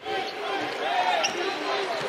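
A basketball being dribbled on a hardwood court over the steady murmur of a large arena crowd.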